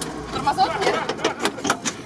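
Indistinct voices inside an open UAZ cab, with a few sharp clicks and rattles near the end.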